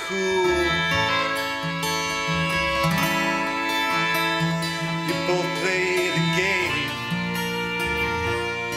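Acoustic band playing an instrumental passage between sung lines: strummed acoustic guitar over a stepping upright-bass line, with violin.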